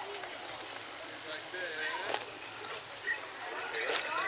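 Indistinct voices of people talking in the background, with a few sharp clicks near the end.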